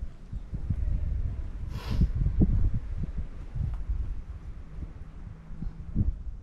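Low, irregular rumble of wind on the microphone, with a brief hiss about two seconds in.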